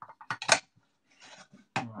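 Plastic vegetable dicer being handled and fitted together: a quick run of clicks and knocks, the loudest about half a second in, then a faint rustle.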